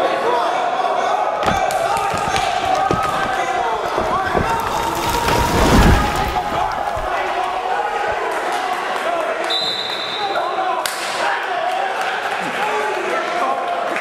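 Heavyweight wrestlers grappling on a gym mat, with a heavy thud as bodies hit the mat about six seconds in, under steady shouting and talking from spectators and coaches in an echoing gymnasium. A brief high steady tone sounds near ten seconds.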